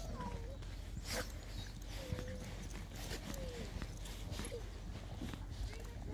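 A pug whimpering, giving about six short, thin whines that slide up or down in pitch, over the patter of footsteps on a muddy path.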